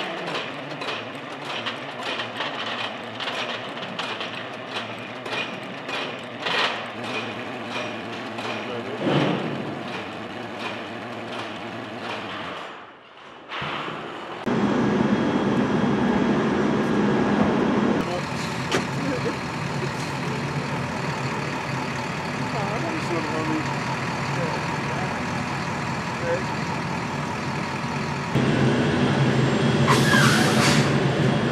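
A mechanical ammunition loader feeding 20mm rounds clatters, with regular clicks about three a second. About halfway through, a louder, steady engine noise takes over, with voices faintly in it.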